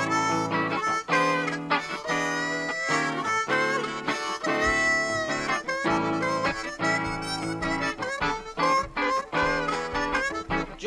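Blues harmonica playing the lead with bending notes over guitar accompaniment in a tune's instrumental introduction.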